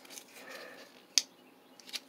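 Faint handling noise of a coiled USB charging cable being fiddled with against a plastic camping lantern, with one sharp click a little over a second in and a smaller one near the end.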